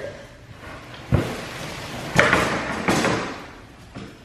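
A flat crate panel being pulled out of its cardboard box and packing paper: a dull thump about a second in, then two louder scraping, rustling bursts of cardboard and paper a little under a second apart.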